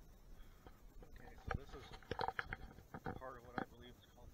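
Indistinct speech in the second half. Before it come a few sharp thuds, from footsteps on the dirt trail and from handling the camera.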